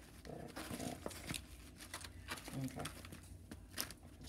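Dry, brittle tamarind pod shell crackling and its fibrous strings tearing as fingers peel the pod, a scatter of small irregular crackles and clicks. A brief voiced hum comes about half a second in.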